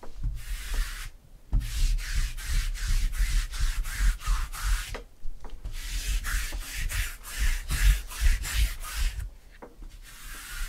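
A hand-held roller rubbed back and forth across a tabletop in quick repeated strokes, in three runs with short pauses between them.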